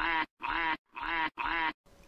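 An animal-call sound effect, a short nasal quack-like call repeated about four times in quick succession, each call the same as the last.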